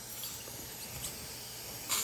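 Dental suction tip in the mouth hissing steadily and faintly, with a short louder burst of hiss near the end.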